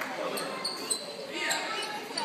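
A basketball bouncing on a gym floor during play, several short knocks, with people's voices over it.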